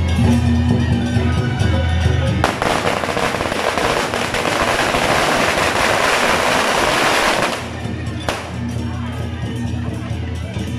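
A string of firecrackers goes off in rapid crackling for about five seconds, starting about two and a half seconds in, over loud festival music with a heavy bass line. The music carries on alone after the string stops, with one more single bang shortly afterwards.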